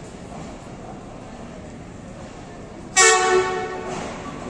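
Pakistan Railways ZCU-20 diesel-electric locomotive sounding its horn as it approaches the platform: one loud blast about three seconds in that fades away over about a second. Before the blast there is a steady background rumble.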